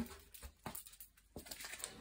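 Quiet room with a few faint, short clicks spread through it.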